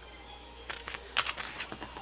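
Light ticks and crackles of a paper planner sticker being peeled from its sheet and pressed onto the page, with a small cluster of sharp clicks just past a second in.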